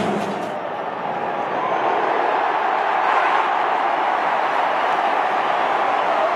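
Large stadium crowd cheering, a steady roar that dips slightly about a second in and swells again from about two seconds.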